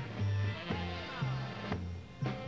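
Cleveland-style polka band playing a dance polka: accordions carry the melody over a steady oom-pah bass that alternates between two low notes about twice a second.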